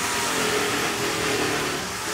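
Steady whirring noise of a motor-driven machine running, with a faint even hum under it.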